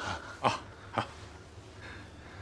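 A man's short chuckle: two brief voiced bursts about half a second apart, over faint room tone.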